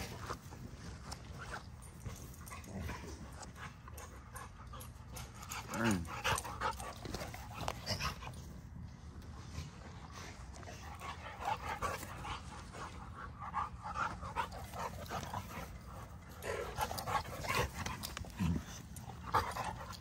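American Bully dogs playing and running in grass: panting, paws thudding and rustling, and a couple of short vocal noises, one about six seconds in and one near the end.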